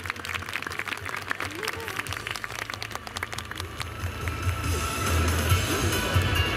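A crowd applauding, with music and some voices; the clapping thins out about four seconds in as the music gets louder.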